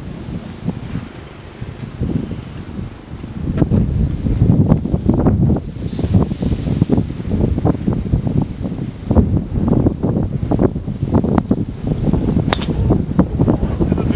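Wind buffeting the microphone in gusts, stronger after the first few seconds. Near the end, a golf driver strikes a ball off the tee with a single sharp crack.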